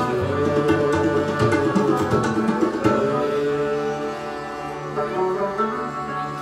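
Sikh kirtan instrumental passage: sustained harmonium with plucked rabab and bowed string instruments, and tabla strokes that thin out after about three seconds as the music gradually gets softer.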